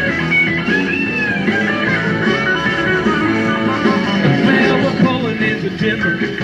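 Live rock band playing an instrumental passage, with a lead line bending up and down in pitch over a steady band backing.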